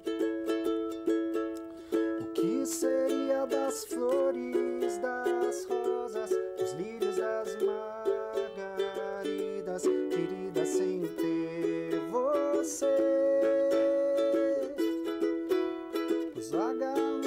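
Ukulele strummed in a steady, quick rhythm, with a man singing a melody over it and holding one long note near the end.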